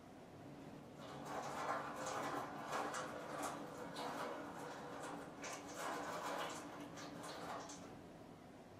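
Water pouring in a thin stream from the spout of a small Yixing clay teapot and splashing onto the tea tray. This is the rinse of the Pu-erh leaves being poured away. The splashing starts about a second in, goes on softly for several seconds, and stops near the end.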